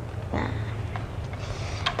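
Low steady room hum, with a single light plastic click just before the end as the orange Nerf toy blaster is handled in both hands.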